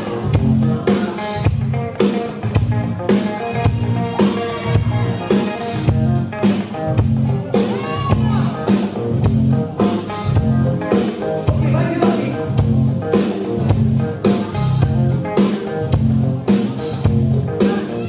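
Live band playing with a steady drum beat, bass and electric guitar.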